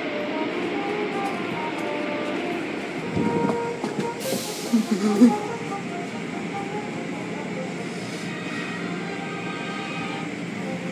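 Automatic car wash tunnel running: a steady rumbling wash of spinning cloth curtains and brushes and water spray, heard through the viewing-window glass. About four seconds in a short spray hiss and a few louder knocks stand out.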